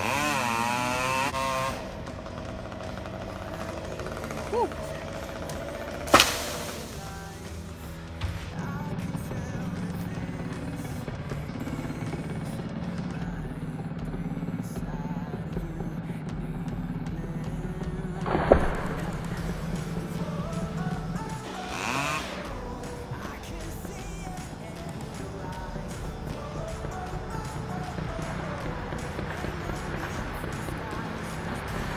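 A chainsaw working up in a tree: it revs with a wavering, rising pitch at the start, then runs steadily. Two sharp, loud impacts stand out, about six and eighteen seconds in.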